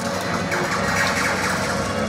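Improvised lo-fi noise machines built from turntables and small motors running together: a dense, steady mechanical drone with many small clicks and rattles.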